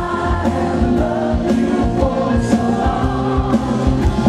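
Live rock band performing: lead and backing vocals singing together over electric guitar, bass, keyboard and a steady drum beat.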